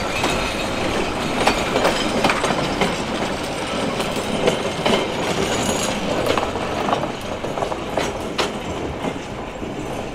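Narrow-gauge passenger coaches rolling past, their wheels clicking irregularly over the rail joints, the sound easing slightly toward the end.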